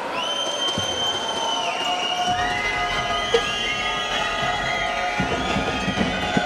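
Arena crowd whistling in long, shrill held notes that overlap and shift in pitch over a background hum of the crowd, as a free throw is taken.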